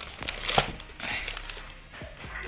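Plastic wrapping crinkling and rustling, with a few sharp crackles, as a plastic-wrapped motorcycle exhaust cover is handled.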